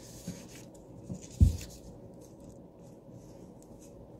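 Paper rustling and handling noise close to a pulpit microphone, with a soft low thump about one and a half seconds in, the loudest sound, then quiet room tone.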